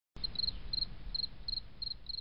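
A cricket chirping steadily: short high trills of three or four pulses, about three a second, over a faint low rumble.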